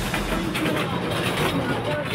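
People's voices over the general noise of an open parking lot, with no music playing.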